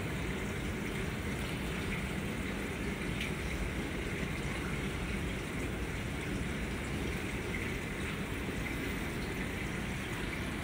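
Steady rushing of moving water with a low rumble underneath, from the water flow of a large reef aquarium while rock is being blown clean.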